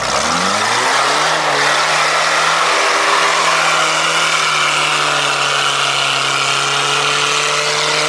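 Off-road trial jeep's engine revving hard, rising quickly in the first second and then held at high revs as the jeep climbs a steep, loose sandy slope. Its tyres dig and churn the sand.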